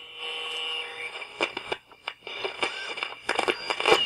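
Crackly radio-transmission audio: a held tone over faint static for about the first second, then scattered clicks and pops that grow thicker near the end.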